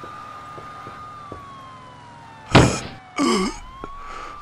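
An emergency siren wailing steadily, its pitch sliding down past the middle. About two and a half seconds in comes a sudden loud burst of noise, the loudest sound, followed by a short strained vocal sound.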